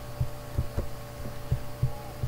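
Soft, irregular low thumps, about six in two seconds, over a steady low hum.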